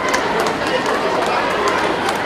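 Speech, not made out, over outdoor crowd noise, with a few sharp clicks.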